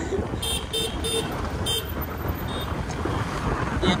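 Road traffic and wind on the microphone from a moving vehicle, a steady low rumble, with a vehicle horn beeping four short times in quick succession in the first two seconds and once more faintly a little later.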